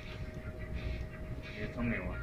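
Low room noise with a steady faint hum and faint, indistinct voice sounds.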